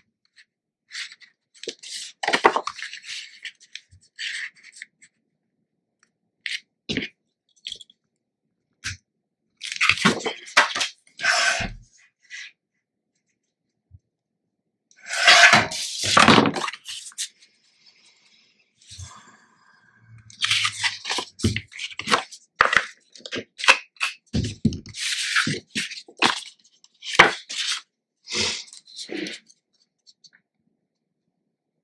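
Paper being handled on a cutting mat: patterned paper rustling, sliding and tapping in short irregular bursts with pauses between, with a longer, louder stretch of rustling about fifteen seconds in.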